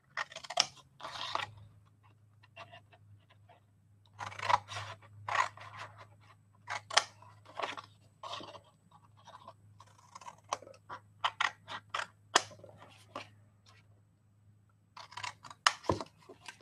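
Scissors cutting through thick patterned paper in a run of short, irregular snips, with a couple of quieter pauses between bouts of cutting.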